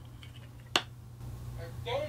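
A single sharp click about three-quarters of a second in, then soft murmured speech near the end, over a steady low hum.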